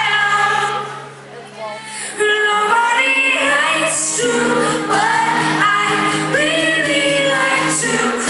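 Live pop-rock performance: a woman sings lead over acoustic guitar with steady low held notes beneath. The music drops away briefly about a second in, and the singing comes back about two seconds in.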